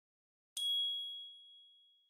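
A single high chime ding about half a second in, ringing out and dying away over about a second and a half: the audio sting of the KOCOWA logo animation.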